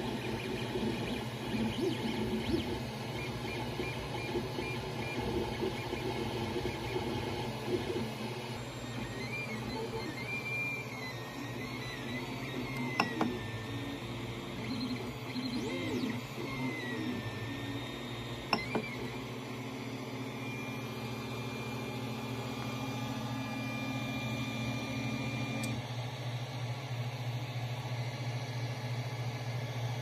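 Creality Ender 3 3D printer running: its fans hum steadily while the stepper motors whine and shift in pitch as the print head moves. Two sharp clicks come around the middle.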